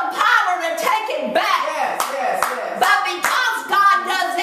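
Several sharp hand claps, irregularly spaced, over a woman's voice exclaiming or half-singing.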